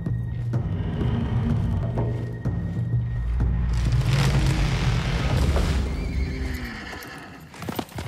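Low sustained music, with a horse whinnying loudly about halfway through, its cry falling off in pitch, and a few hoofbeats near the end.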